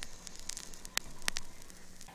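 Faint crackling hiss with a few sharp clicks, two of them clearest about a second in.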